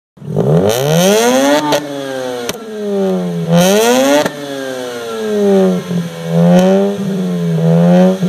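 Mazda RX-8's two-rotor Renesis rotary engine revved while standing, its pitch climbing and falling back about three times, with sharp exhaust pops and cracks as the throttle is lifted.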